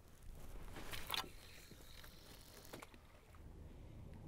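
Faint water lapping against a kayak hull, with a few small handling clicks and knocks; the loudest is about a second in.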